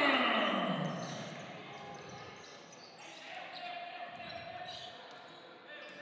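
Basketball dribbled on a hardwood gym floor, echoing in the hall. Crowd voices fade away during the first second or two.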